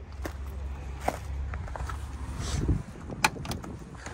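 Wind rumbling on the microphone, with scattered small clicks and steps, then a sharp click a little after three seconds as the rear door handle of an old Lada sedan is pulled.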